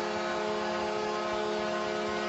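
Arena goal horn sounding one steady low tone after a home goal, over a cheering crowd.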